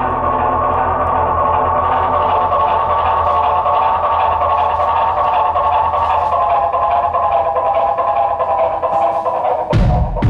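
Live band music: a steady, layered drone of held notes. Near the end a loud thump breaks in and the drone drops away.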